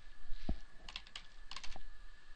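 Computer keyboard being typed on: a soft thump about half a second in, then two quick runs of keystroke clicks.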